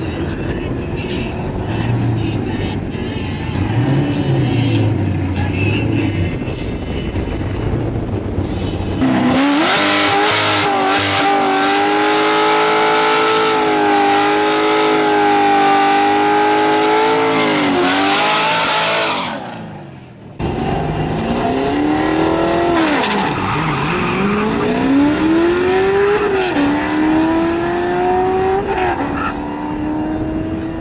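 Drag-race car engines: cars running away down the strip, then a Corvette's V8 held at high revs in a steady burnout as its rear tyre spins in smoke. After a short break, an engine revs hard at a launch down the strip, its note climbing and dropping back with each gear change.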